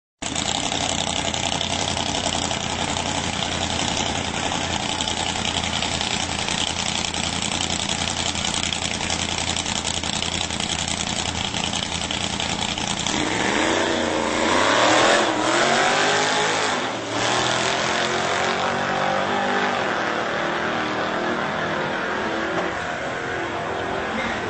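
A drag-racing Fiat 147 and a Porsche running at the start line, then launching about halfway through. Their engines rev up hard, the pitch climbing and falling back in a series of rises as they shift gears, then stays high as they run down the strip.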